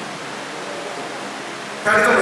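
Steady hiss of background noise in a large hall, with no distinct event in it; a man's voice through a microphone starts up again near the end.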